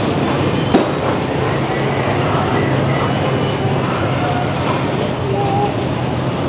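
Steady, fairly loud outdoor background noise with a constant low hum and faint distant voices. A single sharp click comes about three-quarters of a second in.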